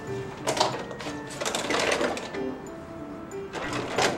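Background music with short, plucked-sounding notes, over the clatter and clicks of tools being rummaged through in a toolbox.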